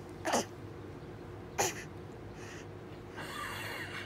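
A baby makes two short sounds that drop in pitch, about a second and a half apart, then a longer breathy noise near the end, while sucking on a cold popsicle.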